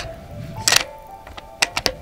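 Bolt of a bolt-action rifle being worked: sharp metallic clicks, one loud one less than a second in and a quick run of three near the end, over background music.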